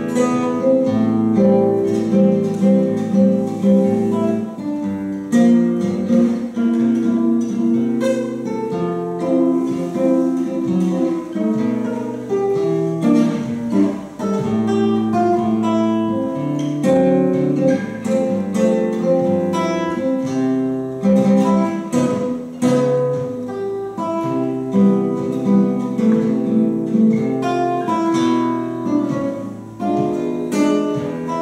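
Solo classical guitar being played: a continuous stream of plucked notes, a melody over lower bass notes.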